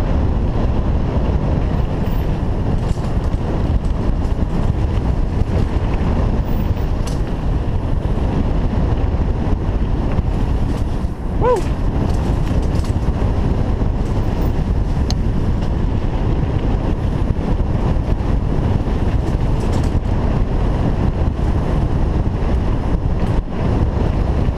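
Wind buffeting the microphone of a camera on a mountain bike riding fast down dirt singletrack, along with steady tyre rumble and the bike rattling over the trail. There is a brief squeak about halfway through.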